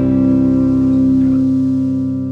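Electric guitar and bass guitar holding a chord, the notes ringing steadily and starting to fade near the end: the last chord of a rock song dying away.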